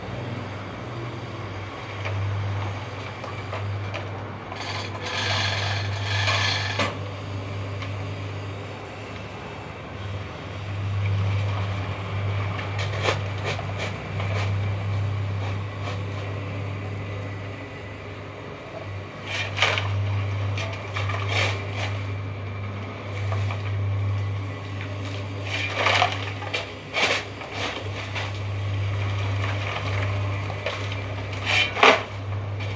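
Small electric concrete mixer running with a steady low hum that swells and eases, with scrapes and knocks now and then.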